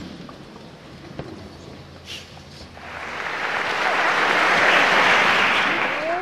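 Audience applauding in a hall. The clapping starts about halfway through, swells to a peak and then dies away near the end.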